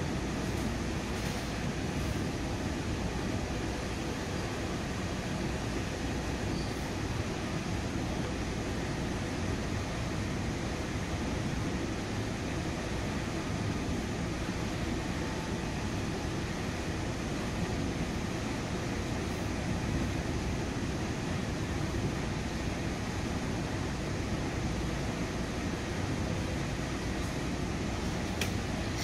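Steady rumble of a commuter train coach running at speed, heard from inside the car: wheels rolling on the rails, with no breaks or rail-joint clicks standing out.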